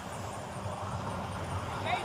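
Steady low outdoor rumble picked up by a body-worn camera's microphone, with no distinct events; a man starts calling out near the end.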